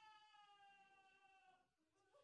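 Faint, long, high-pitched wail from a person's voice, sliding slowly down in pitch and fading out near the end.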